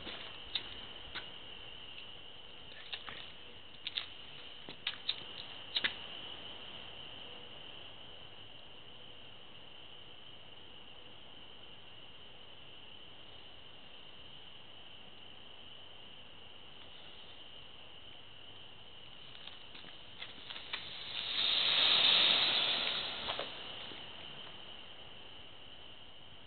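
Homemade ping pong ball and match-head smoke bomb in an aluminium foil wrap, hissing as it flares up. The hiss swells loudly for about two seconds and fades, a little over twenty seconds in. A handful of sharp clicks comes in the first few seconds.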